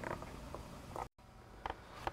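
Quiet room tone with a couple of faint, small clicks. The sound drops out completely for an instant just past a second in.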